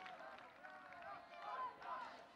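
Faint, distant voices of people shouting and calling out across a sports pitch, with a couple of louder calls near the end.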